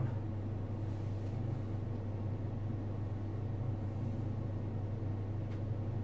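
Steady low mechanical hum of room equipment, with a single faint click about five and a half seconds in.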